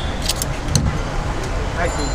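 Busy street noise: a steady traffic rumble with voices chattering in the background, and a few sharp metallic clinks in the first second.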